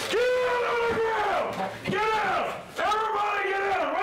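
Loud, strained shouting: three long, high-pitched yells in quick succession.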